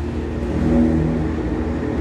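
A motor vehicle's engine running close by, a steady hum over a low rumble of road traffic.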